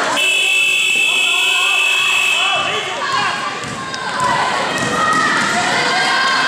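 Game buzzer in a basketball gym sounding one steady electronic tone for about two and a half seconds, starting just after the beginning. Players and spectators shout around and after it.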